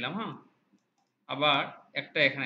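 Speech in short bursts: a voice talking during the first half second and again from about a second and a half in, with a pause between.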